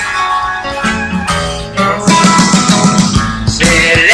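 Rock urbano band music led by guitar, with bass underneath, getting louder about halfway in.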